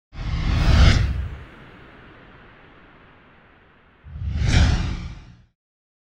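Two whoosh sound effects from an animated logo intro, each with a deep rumble under it. The first swells about a second in and trails off slowly; the second comes near the end and cuts off suddenly.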